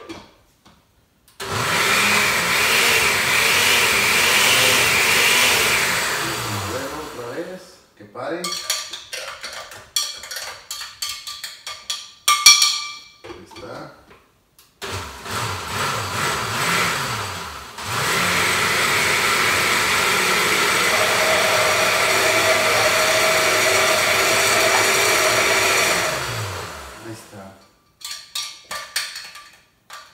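Countertop blender blending avocado with sour cream and milk. It runs in two stretches: about five seconds at full speed that then winds down, and later a lower speed that steps up to full for about eight seconds before winding down again. Clattering knocks fill the gap between the runs.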